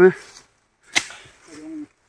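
One sharp chop of a machete blade striking plants or wood, about a second in.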